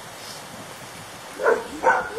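A dog barks twice in quick succession, near the end.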